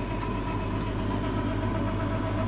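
Electric meat grinder running with a steady hum while it pushes spiced mince through a stuffing tube into a sausage casing.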